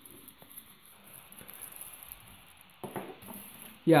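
Faint rustling and crinkling of a phone's frosted plastic wrapping as it is handled, with a brief louder rustle about three seconds in.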